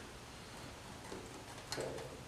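Faint handling sounds of a pod air filter being worked loose on a small engine's carburetor, with a soft click near the end.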